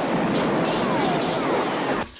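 Barrage of many police guns firing at once, so dense it merges into a steady roar, with two short falling whistles about a second in.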